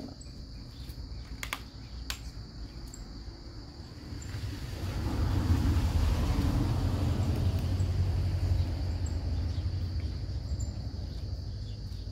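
A steady, high-pitched insect drone runs throughout, with a couple of light clicks in the first two seconds. About four seconds in, a low rumble swells up and becomes the loudest sound.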